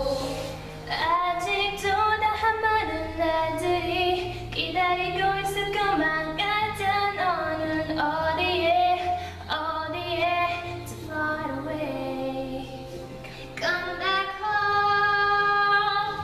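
Young female voices singing a K-pop ballad, one solo voice after another, with steady low sustained notes underneath.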